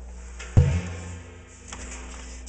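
An empty open-top steel oil drum knocked once about half a second in, giving a short low boom that rings briefly, over a steady low hum.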